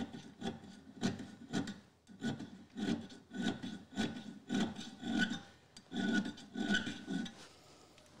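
Small auger bit file rubbing back and forth across the steel cutting edge of an auger bit as it is sharpened, in short even strokes of nearly two a second.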